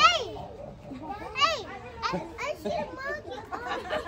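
Children's voices and people chattering, with high-pitched excited exclamations just after the start and again about a second and a half in.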